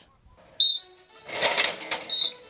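Football practice sounds as a player drives into a padded blocking sled: a short, high squeak-like tone about half a second in, then a rush of scraping, hitting noise for the last half second or so.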